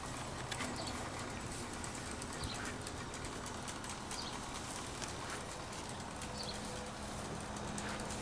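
Outdoor background hiss with a bird's short falling call repeating faintly every second or so.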